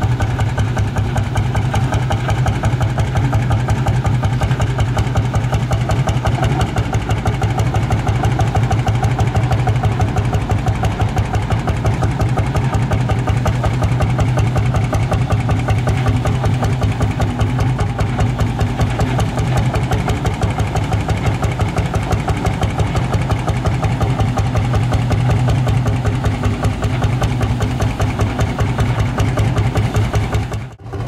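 Lanz Bulldog tractor's single-cylinder hot-bulb two-stroke engine running at low revs with a steady, rapid, even beat as it drives slowly on steel wheels.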